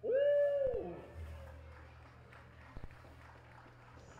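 A single voice letting out a loud, held cheer right after the ceremonial first pitch, lasting under a second and dropping in pitch as it ends, followed by faint crowd noise.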